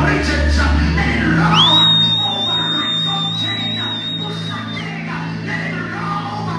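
Live gospel worship music: a male singer with a band over held bass notes. About a second and a half in, a high, steady tone slides up and holds for about three seconds.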